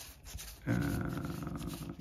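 A man's low, drawn-out hesitation sound, 'uhh', starting a little under a second in and held at a steady pitch for about a second.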